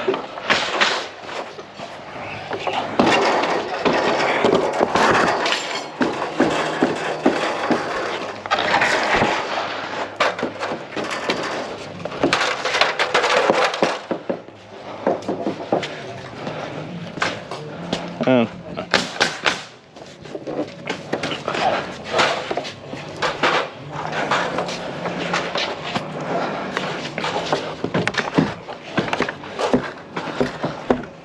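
Clatter and knocks of timber wall frames being lifted and handled, with sharp impacts scattered throughout and indistinct voices underneath.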